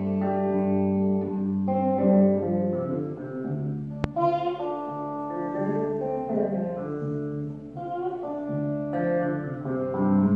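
Solo electric guitar playing slow, held chords and single notes, each ringing for a second or two before the next change. A single sharp click cuts across the music about four seconds in.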